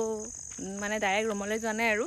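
Crickets chirring steadily in one continuous high tone, with a woman talking over it from about half a second in.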